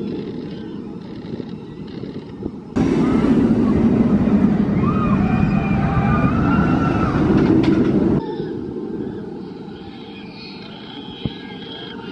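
Bolliger & Mabillard hyper coaster train running along its steel track. A loud, steady rushing noise comes in suddenly about three seconds in and cuts off about eight seconds in, with a wavering higher tone over it. Before and after it the train is heard more quietly.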